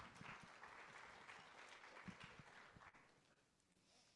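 Faint applause from a small congregation, dying away about three seconds in.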